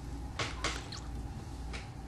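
Fingertips pinching and shaping a soft hot-glue fly head on a hook held in a tying vise: a few short, soft clicks, three in the first second and one near the end, over a steady low hum.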